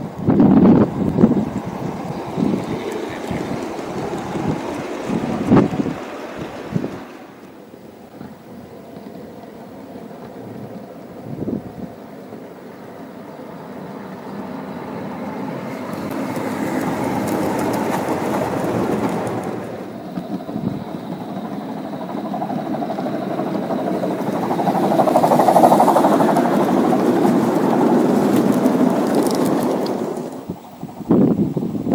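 Gauge 1 model train rolling along the garden track, its wheels rumbling on the rails. There are several knocks in the first few seconds, and the sound swells twice as the train comes close, loudest near the end.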